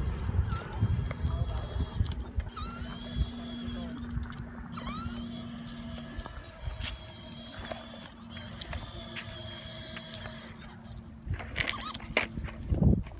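Small plastic three-wheeled kick scooter rolling over a concrete sidewalk, a low rumble with occasional clicks. A steady low hum runs under it through much of the middle, with a few short rising squeaks.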